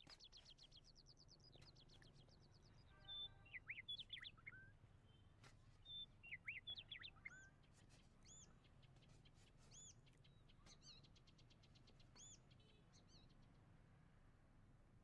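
Faint birds chirping: a quick trill at the start, then two clusters of short rising and falling whistled notes, then single arched notes a second or two apart, over a low steady hum.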